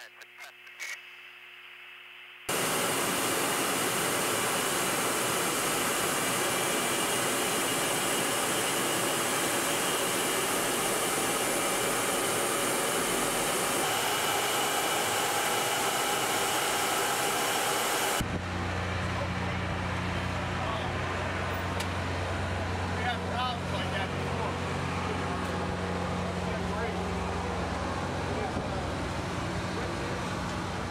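A short radio call, then a loud, steady rush of air and jet noise from aboard an aircraft in flight. About eighteen seconds in it cuts abruptly to a steady low droning hum.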